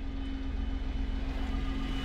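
A 2012 Citroën C1's small engine idling steadily, heard from inside the cabin with the air conditioning switched on.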